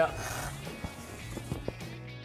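Background music playing steadily, with a short rustle near the start as the rooftop tent's fabric cover is pulled down and a few light clicks after it.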